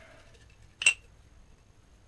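A single sharp clink about a second in, from hands knocking a glass jar full of folded paper slips as it is tipped to draw one out.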